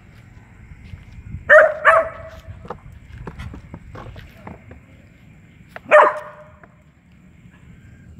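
A dog barking: two quick barks about a second and a half in, then a single bark about six seconds in, with scattered faint clicks and a faint steady high tone between them.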